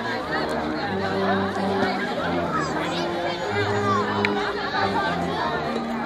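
A slow tune in long, steady low notes, played by a band, under the loud chatter of a crowd of children and adults.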